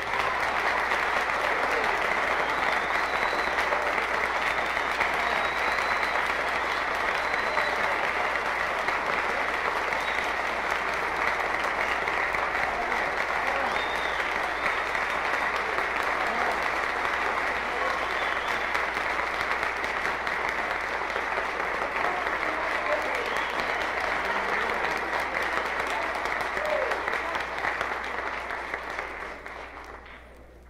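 Concert audience applauding steadily after a live jazz band number, with a few scattered shouts, fading out near the end.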